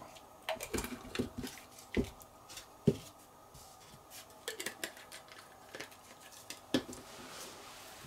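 Light clicks and knocks of handling as a small plastic bottle of metal burnishing fluid is capped and set down, with a couple of sharper knocks in the first three seconds and another near the end.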